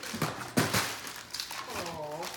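Paper crinkling and rustling from gift wrapping being handled, loudest in the first second, followed by a brief voice near the end.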